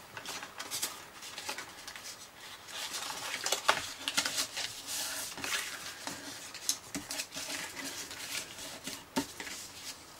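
Die-cut cardstock being folded and creased by hand on a cutting mat: irregular rustles, scrapes and small taps of card.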